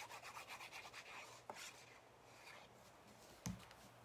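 Fine tip of a liquid glue bottle scrubbed quickly back and forth over the back of a small piece of card stock, a faint, fast scratching that stops about a second and a half in. A soft knock follows near the end.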